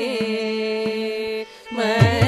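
Carnatic vocalists and violin holding one long steady note over a sruti box drone, with the mridangam silent. About one and a half seconds in, the sound breaks off briefly. Near the end the singing and the mridangam's deep strokes come back in.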